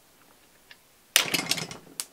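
Metal-on-metal scraping with small clicks from a punch driving a fire-control-group pin out of an AR-15 lower receiver. It starts about a second in after a nearly silent start and ends in a sharp click.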